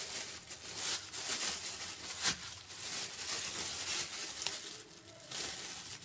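Thin black plastic carry bag crinkling and rustling as pea pods are pulled out of it, with a sharper crackle about two seconds in.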